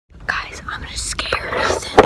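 A boy whispering close to the phone's microphone, cut off at the end by one loud knock as a hand grabs and covers the phone.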